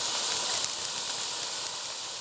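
Steady hiss of pyrotechnic spark fountains, slowly fading out.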